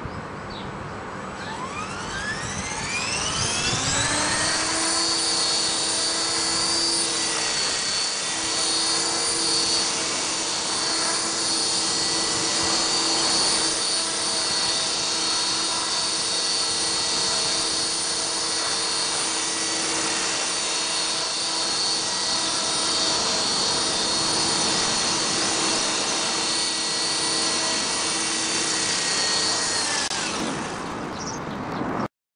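Esky Belt CP electric RC helicopter spooling up with a rising whine over about three seconds, then a steady high whine of motor, gears and rotor blades as it hovers just off the ground. The whine begins to fall at the very end as it winds down.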